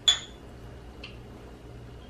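Two small drinking glasses clinked together in a toast: one sharp clink with a short ring about a tenth of a second in, then a fainter tick of glass about a second later.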